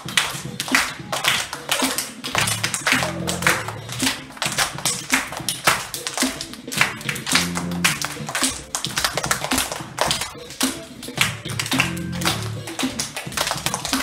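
A class of young children clapping along to upbeat funk music with a repeating bass line, many sharp claps a second over the music.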